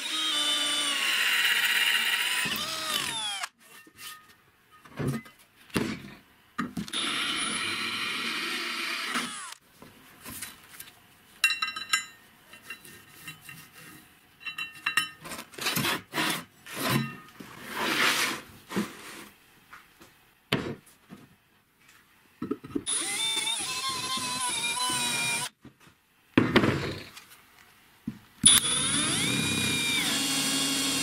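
An electric drill boring holes in a brake disc, heard in several separate bursts; the motor's pitch sags as it stops after the first. Between the bursts come short metallic knocks, clinks and a quick run of ticks. Near the end the drill runs again as it bores into plywood.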